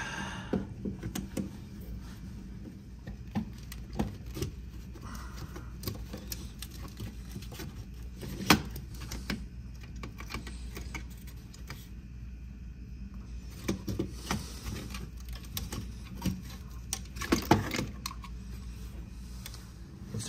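Screwdriver work on a contactor's terminal screws and wires being pulled free of the lugs: scattered small metallic clicks, taps and scrapes, the sharpest about halfway through and a few more close together near the end. A steady low hum sits underneath.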